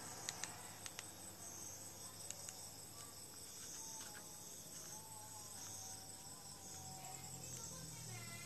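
Faint, steady high-pitched chirping of crickets, with a few light clicks in the first second.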